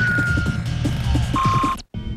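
Electronic bumper music with a heavy low beat and synth effects: a falling electronic tone near the start and a short steady beep near the end, before the sound cuts off suddenly.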